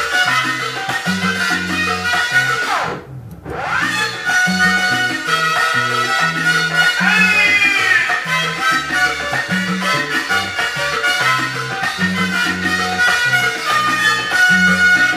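Instrumental passage of a salsa song by a sonora-style band, with a stepping bass line under the band. The music dips briefly about three seconds in, then comes back in full.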